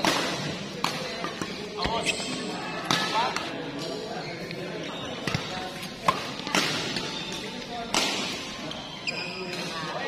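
Badminton rackets striking a shuttlecock in a doubles rally in a large hall: a string of sharp hits, roughly one a second, with voices chattering in the background.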